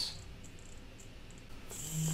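Quiet room tone with a faint steady hiss; a soft hiss swells briefly near the end.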